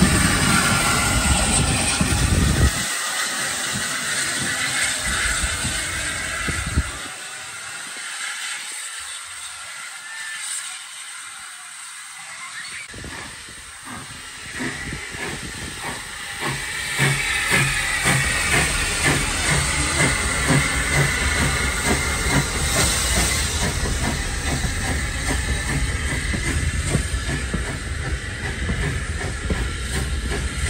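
SE&CR O1 class 0-6-0 steam locomotive hissing steam, then working hard with a regular rhythm of exhaust beats as it pulls away. The sound is quieter in the middle and grows louder again as the beats set in.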